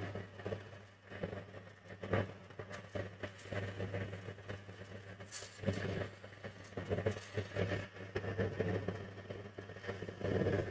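Electric linisher (belt sander) running with a steady motor hum, with irregular surges of sanding noise as small wooden pieces are pressed against the belt.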